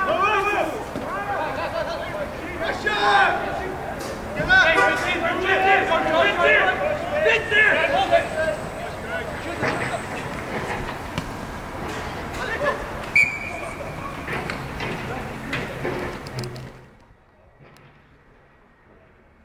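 Several voices shouting and calling over one another, players and onlookers at a rugby match, with a brief high steady tone about thirteen seconds in. The sound falls away sharply near the end.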